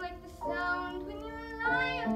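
A 12-year-old girl singing solo in a clear child's voice: held notes that change every half second or so, with one rising toward the end.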